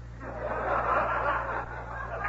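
Small audience laughing together, swelling about half a second in and easing off, over a steady low hum on the recording.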